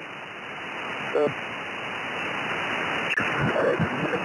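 Shortwave band noise, a steady hiss limited to the narrow upper-sideband passband, from an Anan 8000DLE software-defined radio as it is tuned across the 20-metre band. It carries a brief voice fragment about a second in, a single click just after three seconds, and broken voice fragments near the end.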